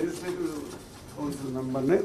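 A speaker's voice in a large hall: a drawn-out hesitation sound at the start and a held, low voiced sound building into speech near the end.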